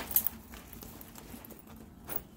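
A few sharp clicks of a handbag's metal hardware and studded strap right at the start, then soft fabric rustling as the bag is handled.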